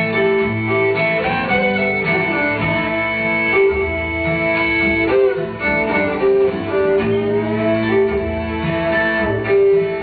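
Bluegrass band playing an instrumental passage: fiddle with long held notes over strummed acoustic guitars and upright bass.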